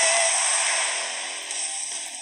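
Closing bars of a TV sports programme's opening theme music, dying away over the second half.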